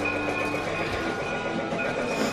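Music playing along with a battery-powered toy train running on its plastic track.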